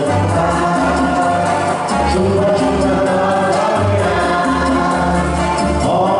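Live dance music played on electronic keyboards, with a steady beat and a bass line moving from note to note.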